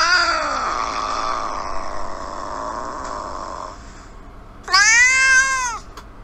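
A house cat meowing twice. The first meow is long and drawn out, rising and then slowly falling in pitch; the second, near the end, is shorter and arched.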